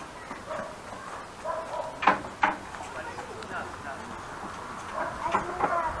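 Distant, indistinct voices, with two short sharp clicks about two seconds in.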